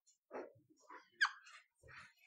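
Whiteboard marker squeaking and scraping as a long line is drawn across the board, in several short strokes, with the sharpest, highest squeak about a second in.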